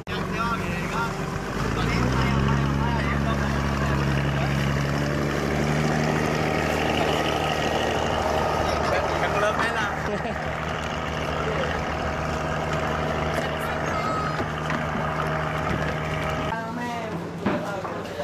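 Boat engine running at a steady pitch. It comes in about two seconds in and cuts off abruptly near the end, with voices over it.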